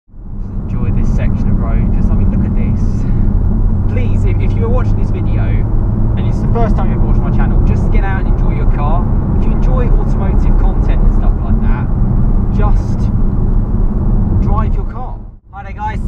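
A VW Golf R's turbocharged four-cylinder engine and road noise heard from inside the cabin while driving: a steady low drone.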